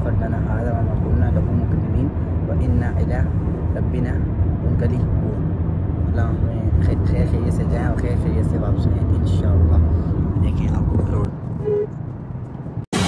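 Cabin noise of a Honda car driving on a highway: a steady low rumble of road and engine, with a man speaking quietly over it.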